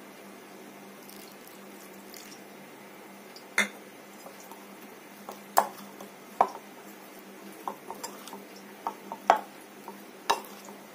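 Metal spoon clinking against a white bowl several times at uneven intervals, starting a few seconds in, while flour-coated cauliflower florets are mixed by hand and spoon.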